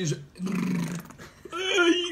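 A man groaning in pain from the burn of a very hot chili pepper in his mouth. There are two wordless groans, a low one and then a louder, higher, wavering one near the end.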